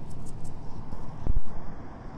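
Steady rumble of traffic from a nearby busy road, with a single loud low thump on the microphone about a second in.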